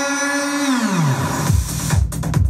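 Hard techno DJ mix at about 150 BPM over a club sound system: the kick drum drops out, a held electronic tone slides steadily down in pitch, and the kick comes back in near the end.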